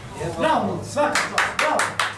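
Hand clapping: a short run of about five quick claps in the second half, applause for the team.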